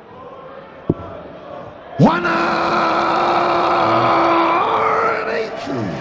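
A dart strikes the board with a sharp click about a second in. Then the darts caller gives the long, drawn-out call of "One hundred and eighty!" for a maximum of three darts in the treble 20, holding one note for about three seconds and lifting it at the end, over crowd noise.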